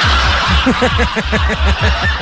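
A person laughing in a quick run of short syllables, each falling in pitch, about six a second, over steady background music.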